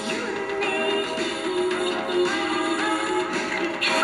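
Music from a vinyl record playing on a portable suitcase record player, with sustained notes and melody lines.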